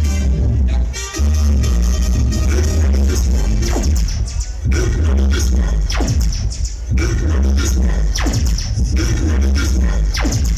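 Electronic dance music played loud through a mobile disco's large speaker stacks during a sound check, with heavy bass. It breaks briefly about a second in, and in the second half a falling sweep effect comes about once a second.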